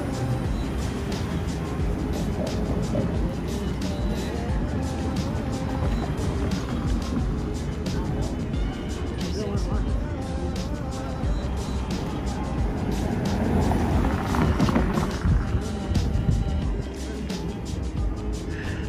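Background music over city street traffic, with one vehicle swelling past loudest about three-quarters of the way through.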